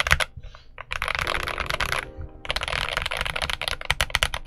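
Typing on the FL Esports CMK98, a tray-mounted steel-plate mechanical keyboard: two quick runs of keystrokes with a short pause between them. The sound is not too loud, a little listless, without much oomph.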